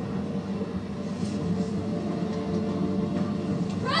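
A low, steady drone from a TV drama's soundtrack, held tones without a beat or voices over them.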